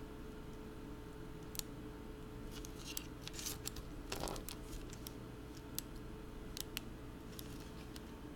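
Faint, scattered small clicks and ticks of small tools and parts being handled, bunched together around the middle, over a steady low electrical hum.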